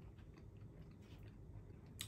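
Faint chewing of a bite of beef burger: soft, scattered mouth clicks.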